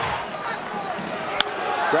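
Ballpark crowd noise, with one sharp crack of a wooden bat hitting a pitched baseball about a second and a half in.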